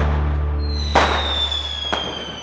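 Outro logo sound effect over the last held low note of the music: a sharp crack about a second in, a high whistling tone gliding slowly downward, and a second crack near the end.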